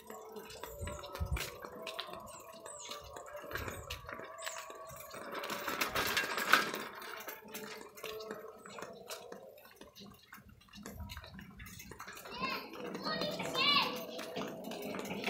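Voices talking, a child's among them, with scattered clicks and rustles throughout and a higher-pitched voice near the end.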